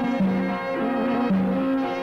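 Greek folk dance tune played on wind instruments, a melody of held notes with a short phrase repeating about every two seconds.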